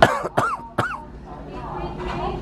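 A man coughing three times in quick succession in the first second, then low store background noise.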